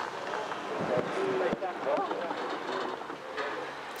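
Outdoor course ambience: an even hiss with faint, distant voices rising and falling.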